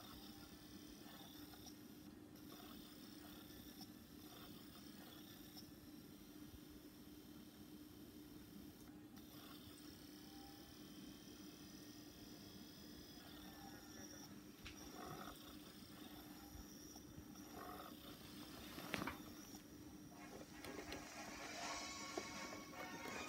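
Near silence: faint room tone with a low steady hum, and a single click near the end.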